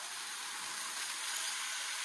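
Diced Spam and onions frying in a skillet, giving a steady sizzle.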